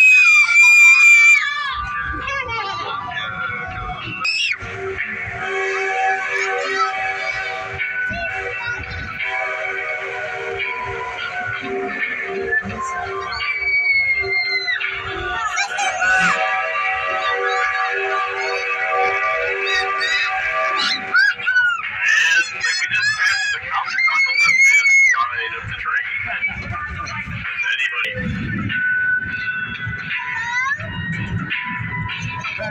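Spooky music with long held chords and wavering, sliding shrieks and wails over it; a loud high shriek comes right at the start.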